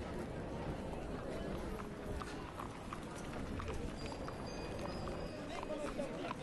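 Quiet, steady town ambience: an indistinct murmur of voices with scattered light knocks and clip-clops.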